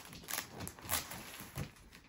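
Christmas wrapping paper on a large gift box crinkling under a hand, in three brief crackles about half a second apart.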